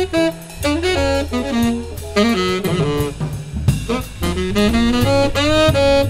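Tenor saxophone playing a jazz solo line of quick, moving notes, backed by a big band's rhythm section of bass and drum kit.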